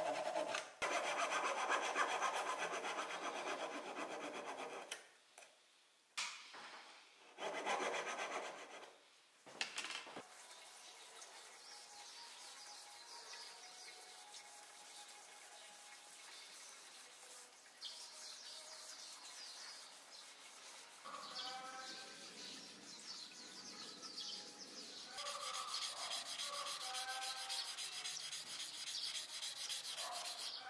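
A Japanese back saw rasping through a small hardwood tenon for the first five seconds, with a shorter burst of rasping around eight seconds. It goes quieter after that, short pitched calls come in past the twenty-second mark, and from about twenty-five seconds a chisel blade scrapes steadily back and forth on a waterstone.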